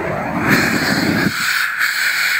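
Propane weed burner torch firing at the ground: a loud rushing flame with a hiss of gas. The low roar cuts off after about a second and a quarter, while the high hiss carries on.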